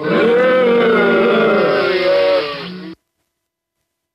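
The V8 sound card's preset 'shock' sound effect playing: a loud, voice-like recorded clip lasting about three seconds that cuts off abruptly.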